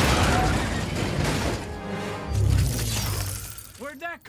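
Action-film soundtrack: dramatic score music over crashing and shattering debris, with a heavy low swell about two and a half seconds in.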